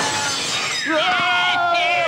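Comedy sound effect: a long descending whistle sliding steadily from high to low over a crash at the start, with a held cry from a voice about a second in.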